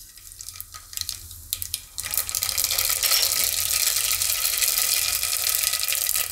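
Seeds hitting hot oil in an aluminium pressure cooker: a few scattered crackles at first, then about two seconds in a dense, steady sizzling and crackling as the oil starts frying them for a tempering.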